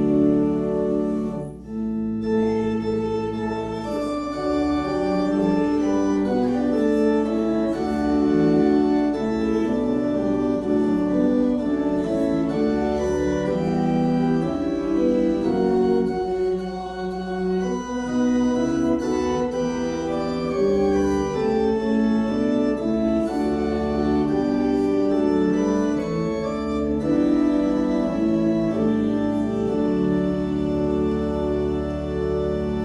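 Organ playing held chords that change every second or so, with a brief pause about a second and a half in.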